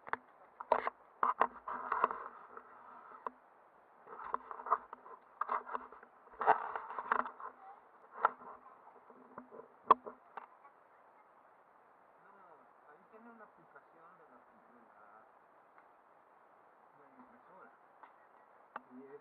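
Handling noise on a small action camera's built-in microphone: bursts of rustling and knocks over a steady hiss, with one sharp click about ten seconds in. After that the sound is faint.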